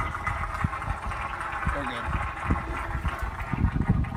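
Steady low rumbling noise with faint voices in the background, and a louder surge of rumble near the end.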